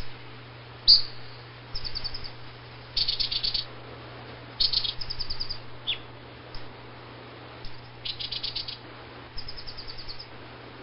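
Baya weaver calling: short bursts of rapid, high chattering chirps, repeated every second or two, with a single thin down-slurred note about six seconds in.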